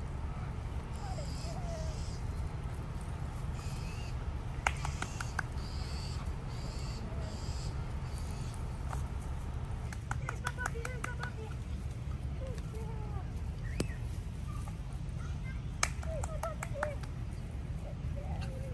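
A woman's short, high-pitched encouraging calls to a puppy, with a few bursts of quick clicking noises, over a steady low outdoor rumble.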